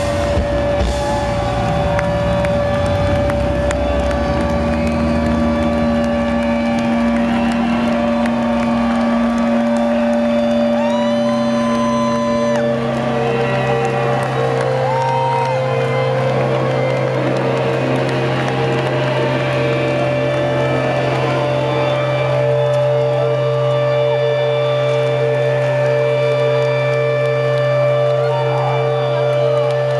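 Live rock band in an arena ending a song: the last heavy drum hits in the first seconds give way to long held, droning amplified notes, while the crowd cheers and whistles over them.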